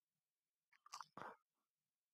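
Near silence in a pause between sentences, with two or three faint short clicks about a second in.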